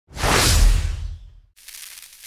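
Intro whoosh sound effect with a deep low rumble, swelling fast and fading out over about a second and a half. A quieter hiss starts right after it, near the end.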